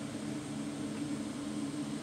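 Steady mechanical hum, a low droning tone over an even hiss.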